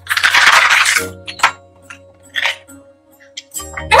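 Paper gift bag rustling loudly for about a second as it is opened and reached into. Soft background music follows, with a couple of faint light clinks.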